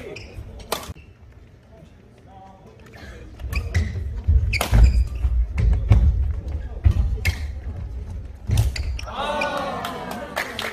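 Badminton rally on a wooden gym floor: rackets strike the shuttlecock in a string of sharp cracks, with heavy footfalls and lunges thudding on the court from about three and a half seconds in. Near the end voices rise as the point is won.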